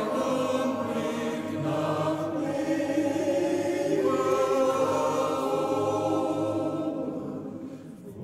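Men's choir singing a slow German part-song in sustained, held chords. The phrase fades away near the end.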